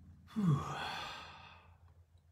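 A man's long sigh about a third of a second in: a voiced 'ahh' sliding down in pitch, trailing off into a breathy exhale that fades over about a second.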